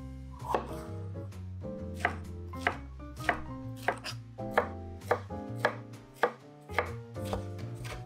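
Chef's knife slicing bell peppers on a wooden cutting board: a regular run of single crisp strokes of the blade through the pepper onto the board, about a dozen of them, roughly one and a half a second.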